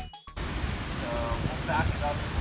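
A rising run of electronic music stops about a quarter second in. It gives way to wind rumbling on the microphone outdoors, with faint voices.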